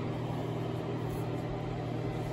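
A steady low mechanical hum with no change in pitch or level.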